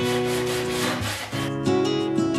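Hand saw cutting through a wooden board in back-and-forth strokes that stop about a second and a half in, over background music with guitar.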